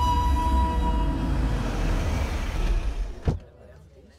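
A Mercedes-Benz SUV rolling in over paving: a low rumble under the fading film score that dies away about three seconds in, followed by a single sharp click.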